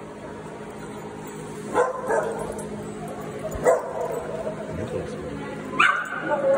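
Small dog barking: three sharp barks, about two seconds apart.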